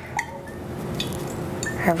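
Olive oil being drizzled from a glass bottle over cut vegetables on a metal baking tray, a low steady pour with a few faint clicks.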